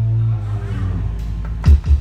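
Live band music: a held low bass note dies away, then a few deep thumps come in near the end.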